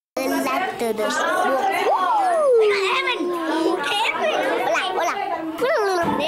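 Young children's voices talking and chattering over one another, with one long voice sliding up and then down about two seconds in.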